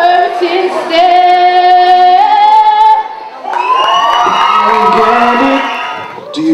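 A woman singing unaccompanied into a microphone, holding one long note that steps up once, then breaking off briefly. After the break a voice sings on with sliding, wavering notes.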